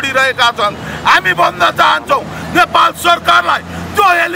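A man shouting slogans in Nepali in short, forceful bursts, with a low steady hum underneath from about halfway through.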